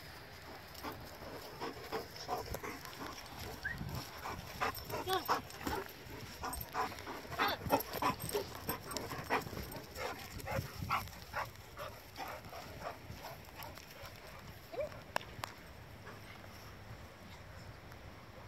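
Dogs playing, making many short whining and yipping sounds, busiest through the middle and easing off near the end.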